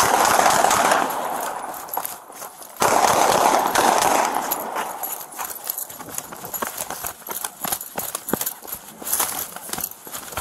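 Body-worn camera being jostled and brushed as the officer moves: two loud stretches of rubbing and rustling against the microphone, the second cutting in suddenly about three seconds in, then a run of light, irregular knocks and footfalls.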